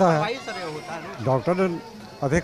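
An elderly man's voice: one drawn-out utterance falling in pitch over about half a second, then a few quieter, halting syllables.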